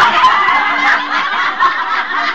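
A group of people laughing and shouting over one another, many voices at once.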